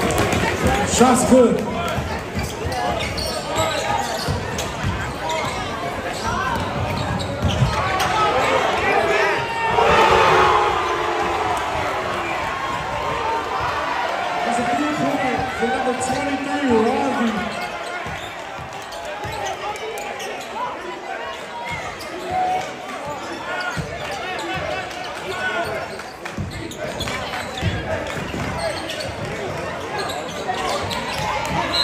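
A basketball being dribbled on a hardwood gym floor, with scattered knocks from the ball. Spectators are talking and shouting, echoing in the gym, and the voices swell louder about ten seconds in.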